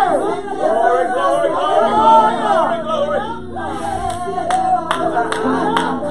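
Gospel worship singing, several voices wavering over held instrument chords. Sharp hand claps start up in a rhythm near the end.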